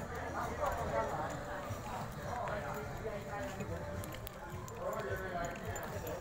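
Indistinct voices talking in a few short bouts, with scattered light clicks and knocks.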